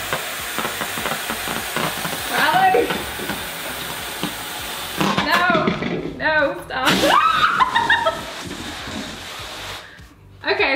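Helium rushing with a steady hiss from a disposable helium tank's nozzle into a latex balloon, stopping about halfway through. Voices and laughter follow.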